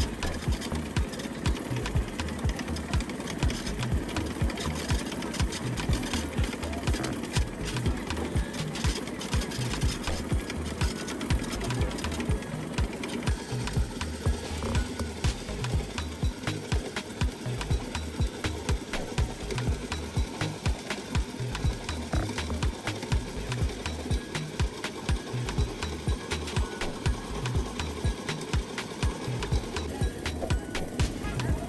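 A motor-driven pepper grinding mill running steadily while tomatoes and peppers are fed through it and ground to paste. It is heard under background Afrobeat music with a steady beat.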